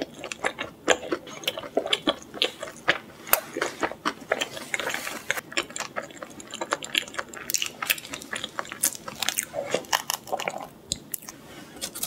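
A person chewing pizza close to the microphone: a dense, irregular run of small crunches and mouth clicks.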